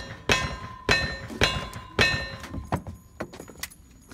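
A lever-action rifle fired in a quick string, shots about half a second apart over the first two seconds, each hit followed by the ring of steel targets. Softer clicks follow near the end as the lever is worked.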